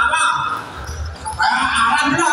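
Basketball dribbled on a concrete court, dull bounces in the middle, among shouting voices of players and spectators.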